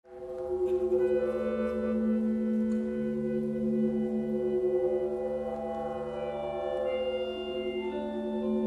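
A band's instrumental intro fading in: sustained, droning chord tones held steady, with a new low note entering about three seconds in.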